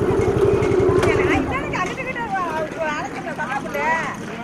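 A motor vehicle engine running with a rapid low pulsing, its pitch falling as it dies away about a second and a half in. Several voices then talk over one another.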